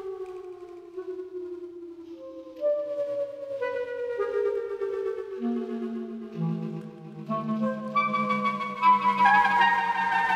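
Clarinet with live electronics: overlapping sustained tones, each sliding slowly down in pitch. More layers pile up and the texture grows denser and louder near the end.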